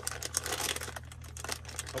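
A snack packet of roasted peanuts crinkling and crackling in the hands as it is opened, a dense irregular run of short crackles.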